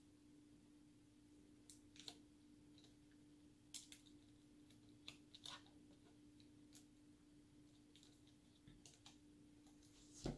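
Near silence: a few faint, scattered small clicks and taps from hands handling a laptop LCD panel and its plastic bezel and connector, over a steady faint hum.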